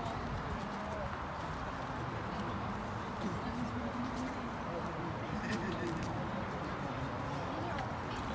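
Outdoor crowd background: indistinct chatter of people nearby over a steady wash of noise, with a few faint clicks.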